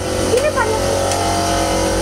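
Boat's engine running steadily, a constant hum with overtones, heard from inside the wheelhouse.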